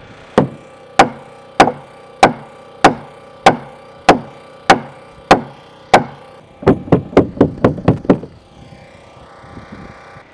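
Pneumatic nail gun driving ring-shank sheathing nails through ZIP System sheathing into wood framing. Evenly spaced shots, a little under two a second, then a quicker run of about nine shots, then it stops.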